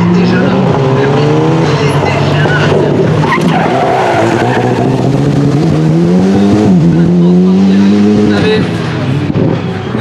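Alpine A110 rally car's engine under hard driving, its pitch falling as it brakes into a corner and climbing again as it accelerates out, with a sharp drop at a gear change partway through.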